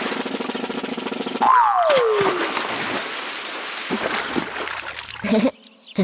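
Cartoon sound effects: a whistle gliding down in pitch about a second and a half in, with splashing water in a paddling pool.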